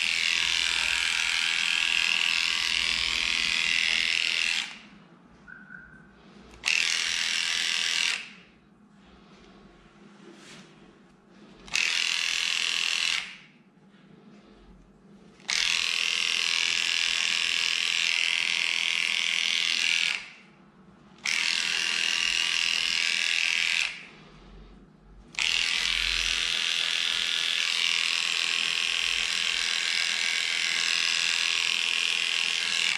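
Electric dog clippers with a #15 blade buzzing steadily as they shave through a severely matted coat. They stop and start again five times.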